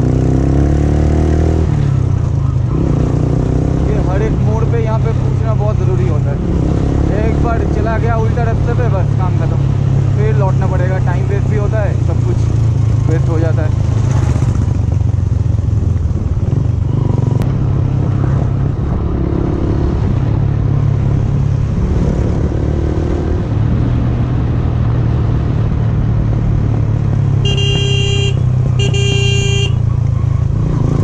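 Motorcycle engine running steadily at cruising speed, with a wavering singing voice over it in the first half. Near the end come two short horn honks, about a second each, as the bike nears a blind bend.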